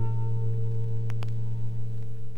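The last strummed acoustic guitar chord of a song ringing out on a vinyl record, its upper notes dying away within the first second while the low notes keep sounding. Two faint clicks of record surface noise come a little after a second in.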